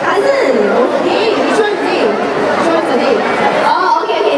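Chatter of many voices talking at once, with no single voice standing out, in a large indoor public space.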